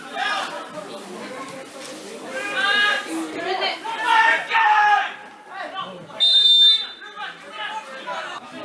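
Players shouting on the pitch in a large echoing hall, with loud calls in the middle. About six seconds in comes one short, steady blast of a referee's whistle, the loudest sound here.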